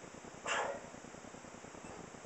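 A single short, sharp animal call, like one bark, about half a second in, over a faint steady background.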